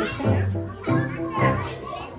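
Voices talking, children's voices among them, with music underneath.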